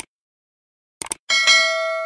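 Subscribe-button sound effects: a quick mouse click at the start and a double click about a second in, then a notification-bell ding that rings on with several clear tones and slowly fades.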